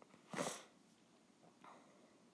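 A single short, breathy sniff or breath close to the microphone, then near silence.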